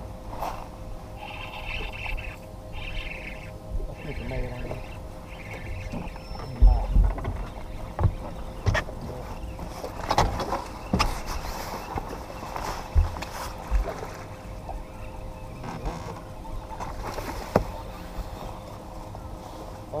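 A bass boat on the water: waves lapping against the hull under a faint steady whine, with several sharp knocks and low thuds on the boat, the loudest about seven seconds in.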